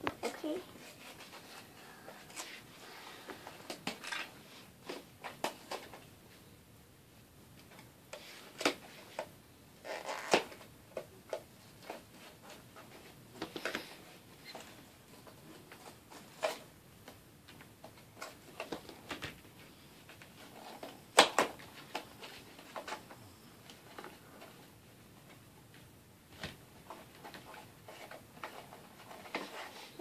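Mystery Minis cardboard blind boxes and black foil wrappers being handled and opened, with scattered sharp clicks and knocks as small vinyl figures are set down on a table; the loudest knocks come about ten and twenty-one seconds in.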